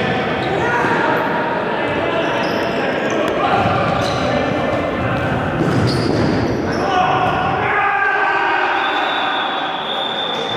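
Indoor futsal game in an echoing sports hall: players' shouts and calls ring around the hall, with occasional thuds of the ball being kicked and bouncing on the hard floor.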